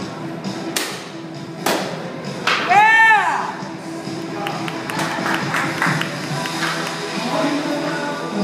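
Karate practitioners' sticks clacking twice, about one and two seconds in. Around three seconds in comes a loud, short group shout (kiai) that rises and falls in pitch, over background music.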